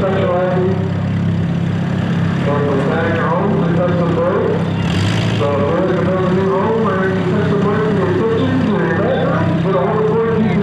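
Engines idling steadily, from the stopped race cars and a backhoe loader on the dirt track, under a distant public-address voice. A brief hiss comes about halfway through.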